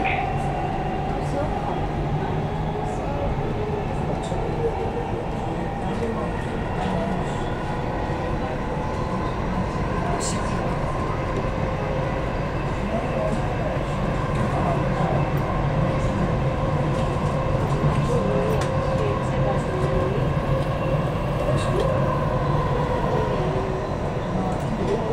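Dubai Metro train running at speed, heard from inside the carriage: a steady rumble and rolling noise with a held, even whine, swelling slightly past the middle.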